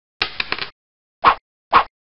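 Intro sound effects for a logo animation: a quick flurry of clicks, then two short, loud pops about half a second apart.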